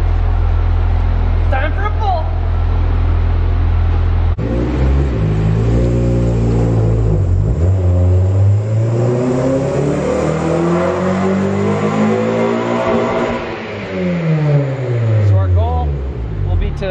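A 2013 Honda Civic Si's K24 four-cylinder, with a K&N intake and pre-cat delete, run on a chassis dyno. A steady low drone gives way about four seconds in to a full-throttle pull, the engine note rising steadily for about eight seconds as it winds out to redline, then falling as the engine comes off the throttle and spins down.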